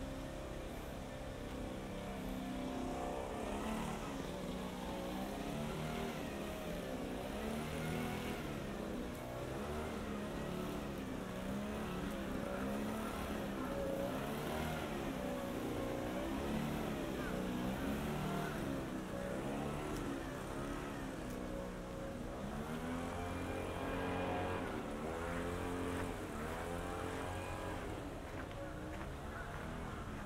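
City street traffic: cars and other vehicles running past, their engine notes rising and falling as they pull away and slow down.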